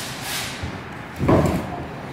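Wheels and tires being handled on a shop floor during a wheel swap: a short hiss near the start, then a dull thump a little over a second in.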